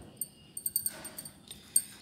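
Light handling sounds of rolling out puri dough: a few soft knocks and short high clinks as the dough ball is pressed on the board and a wooden rolling pin is picked up and set rolling.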